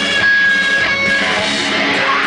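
Distorted electric guitar of a live hardcore/grind band played loud through an amplifier, with a high note held for about a second.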